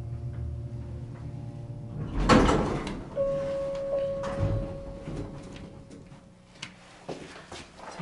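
Otis hydraulic elevator car running with a steady low hum that ends in a loud jolt about two seconds in as the car stops at the floor. A single-tone arrival chime then rings, struck twice and fading, followed by the clicks of the doors opening.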